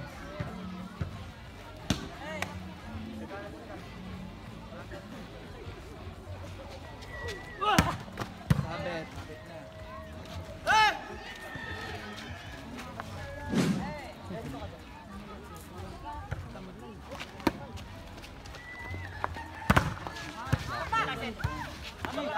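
A volleyball game: sharp smacks of the ball being hit every few seconds, with players and onlookers shouting loudly now and then.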